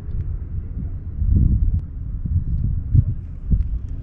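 Wind buffeting the microphone: a low, gusty rumble that swells from about a second in.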